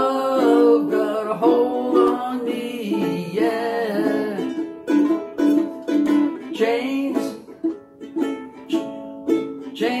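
Two ukuleles strumming chords together, with a voice holding a sung note at the start.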